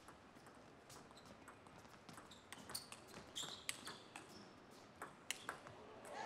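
Table tennis rally: the celluloid-type ball clicking off rubber-faced rackets and bouncing on the table, a string of faint, sharp clicks roughly every half second.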